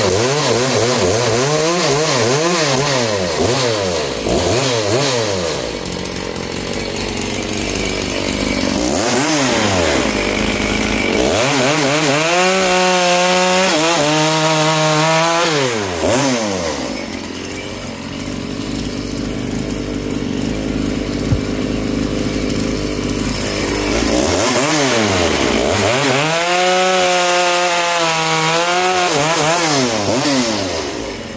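85cc big-bore two-stroke Makita chainsaw on its stock muffler, blipped up and down again and again while cutting into a log round, its pitch rising to high revs and dropping back each time. A fresh chain is being broken in with short throttle blips rather than held wide open.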